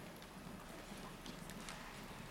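Faint footsteps of several people walking across a wooden stage, with scattered light taps and shuffles.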